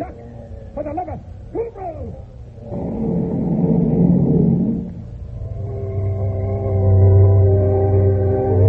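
Radio-drama battle scene: two short yells with falling pitch, then about two seconds of rumbling noise, then from about halfway in sustained music chords swelling louder.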